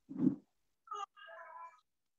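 A faint, brief high-pitched vocal sound about a second in, a short cry or call lasting under a second. A soft low thump comes at the very start.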